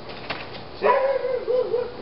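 A dog whining: one wavering whine of about a second, its pitch rising and falling.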